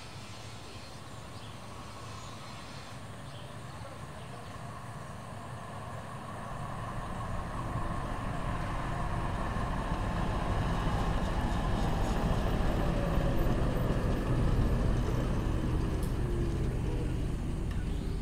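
A low rumble that swells in from about six seconds in, peaks, then eases a little near the end, with a faint tone falling in pitch across its loudest part.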